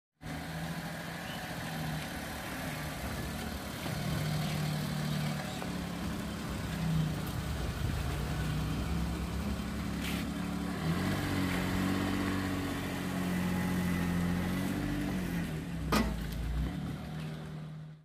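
A small hatchback's engine running steadily at idle, its pitch wavering up and down a little in the second half. There is a sharp knock about two seconds before the end.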